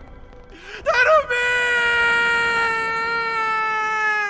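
A person's anguished cry: a short rising shout about a second in, then one long wail held for about three seconds, its pitch sinking slowly.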